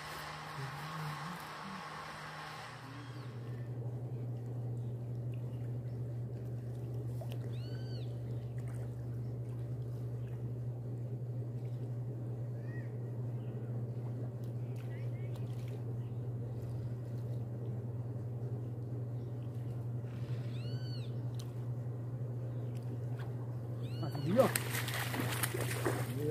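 A steady low hum throughout, with a soft rushing noise in the first three seconds. Two short animal calls, each rising then falling in pitch, come about thirteen seconds apart, with a couple of fainter chirps between them.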